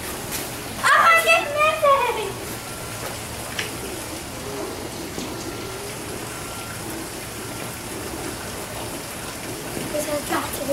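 A child's high-pitched wordless cry about a second in, then the steady hiss of heavy wet snow falling, with faint voices under it.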